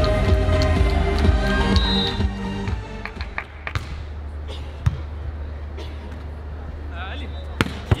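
Music for the first three seconds, then it stops, leaving a steady low hum with a few scattered knocks. Just before the end come two sharp slaps of a beach volleyball being served and played.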